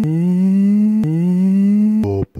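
A steady, droning pitched tone, like humming, whose pitch creeps slightly upward over each second and restarts after a sharp click about a second in.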